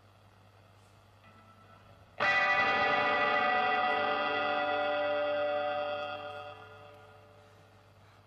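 A single electric guitar chord with effects, struck suddenly about two seconds in, ringing on for a few seconds and then fading out.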